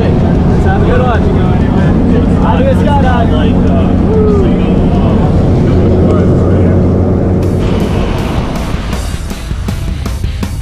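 A light aircraft's engine and propeller drone steadily inside the jump plane's cabin, mixed with music. About seven and a half seconds in, a regular beat of sharp ticks comes in and the drone eases a little.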